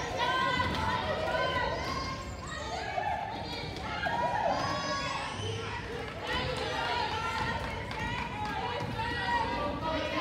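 Wheelchair basketball players' voices calling out across a gym, echoing in the hall, with a basketball bouncing on the hardwood floor.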